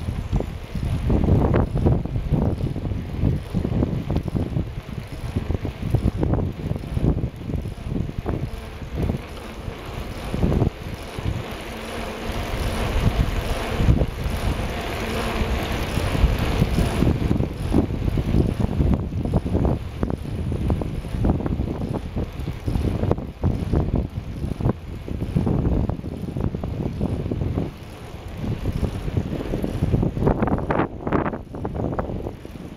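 Wind buffeting the microphone of a camera on a moving bicycle, in uneven gusts throughout.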